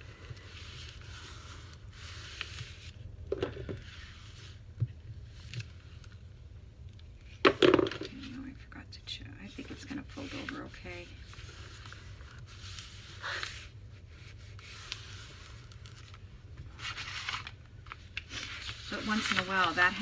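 Paper rustling, sliding and scraping in short spells as a large sheet is folded over an edge and creased flat by hand.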